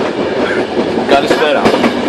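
A moving passenger train heard through its open door: a loud, steady rush of running noise with wheels clacking over the rail joints, several sharp clicks coming in the second half.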